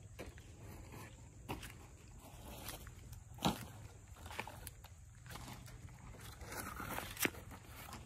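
Quiet footsteps over ground strewn with dry wood veneer scraps, with a few irregular sharp cracks of the thin wood underfoot, the loudest about halfway through.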